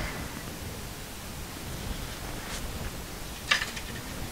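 A steady low hiss of room noise, with a faint tick midway and a brief rustle near the end.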